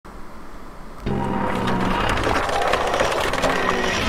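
Channel logo intro music: after a faint first second, a sustained low chord comes in suddenly with fast, dense ticking over it.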